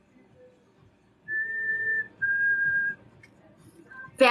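Two long, steady whistled notes, the second a little lower than the first, each lasting under a second with a short gap between them.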